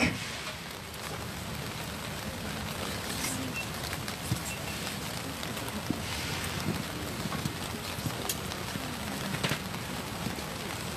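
Steady outdoor background hiss with a few faint scattered clicks and knocks.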